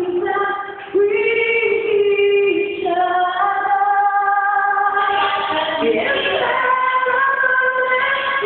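A young man singing into a handheld microphone in a high voice, holding long notes with short breaks between phrases.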